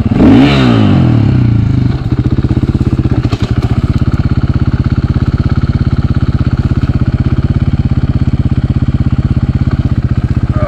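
Dirt bike engine revving up and down for the first two seconds, then settling into a steady idle with an even pulse.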